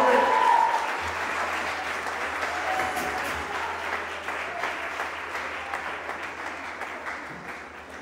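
Audience applauding in a hall after a rock band's number, the applause slowly fading. A held note from the band ends about a second in.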